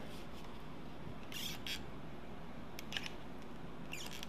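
Quiet room tone with a few faint, brief rustles and small clicks from sheets of paper being handled.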